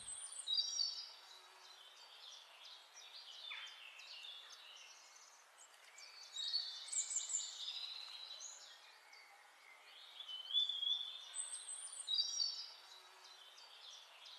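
Wild birds chirping and calling in short bursts of high notes over a light background hiss. The busiest bursts come about a second in, midway, and again near the end.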